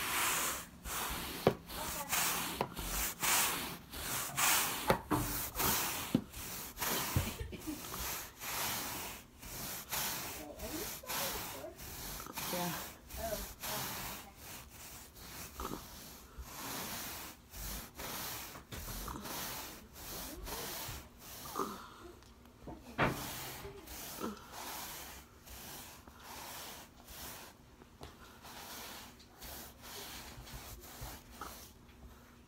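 Stiff-bristled hand scrub brush scrubbing a soaked plush rug back and forth in quick repeated strokes, a rhythmic scratchy rubbing at about two to three strokes a second. This is the agitation step of carpet cleaning, working the solution into the pile before extraction. The strokes are loudest at first, soften through the middle and pick up again near the end.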